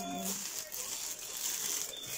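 Clear plastic bag crinkling as it is handled and pulled open around a cosmetic product.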